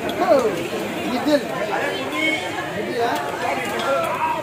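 Indistinct chatter of several people talking over one another, with a few faint clicks.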